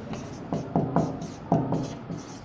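Marker pen writing on a whiteboard: a run of short, quick strokes, about five in two seconds, as letters of a word are written out.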